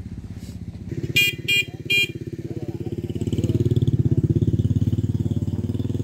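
A motorbike engine running close by, its fast even pulse starting about a second in and growing louder toward the middle. Three short horn beeps sound over it early on.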